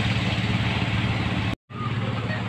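An engine running steadily at idle, a low even hum. The sound cuts out for a moment about a second and a half in.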